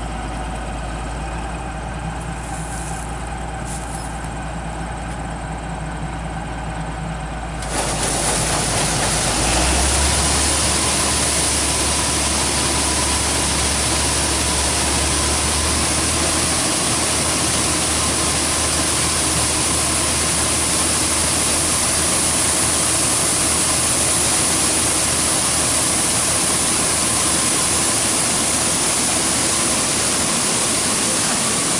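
John Deere 4400 combine's engine running steadily, then about eight seconds in a loud, even rushing sets in, like pouring water: the unloading auger running and soybeans pouring from its spout into a grain trailer. A moment later the engine note steps up under the load.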